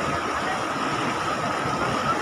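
Tapti river floodwater rushing over a submerged bridge deck, a steady rush of flowing water, with a faint steady tone above it.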